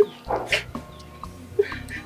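A man's short bursts of laughter.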